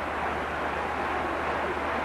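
Steady crowd noise from a large, full arena, an even hum with no distinct landing thud standing out.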